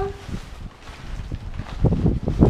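Wind buffeting the microphone, with the rustling of the kite's canopy fabric being handled as the bladder is drawn out of the leading edge.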